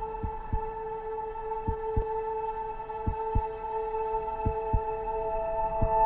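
Film score of a slow heartbeat: paired low thumps, lub-dub, repeating about every second and a half over a sustained drone. A higher held note joins about halfway through.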